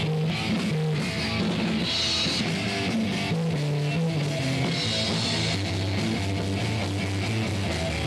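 Live rock band playing: electric guitar and drum kit, with cymbals ringing over a moving low line of notes.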